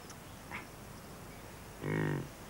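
Low outdoor meadow ambience, then near the end a short, low, pitched grunt from a European bison.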